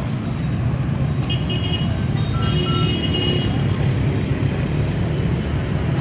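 Steady hum of busy street traffic, mostly motorbikes and cars, with a few short high horn toots between about one and three seconds in.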